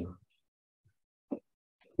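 Near silence in a pause between speakers, broken by a single short soft pop about a second and a third in.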